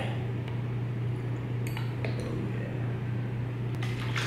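A few light clicks and taps from a plastic dropper bottle and drink bottle being handled, the last just before the bottle is picked up, over a steady low hum.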